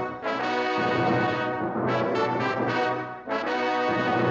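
Orchestral film score led by brass, playing full sustained chords with fresh attacks. The music dips briefly about halfway through and again near the end.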